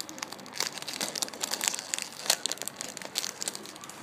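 Clear plastic bag crinkling as the squishy toy sealed inside it is squeezed and handled: a dense run of quick crackles, loudest in the middle.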